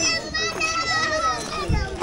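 Children's voices calling out in high, drawn-out shouts that waver in pitch, breaking off near the end.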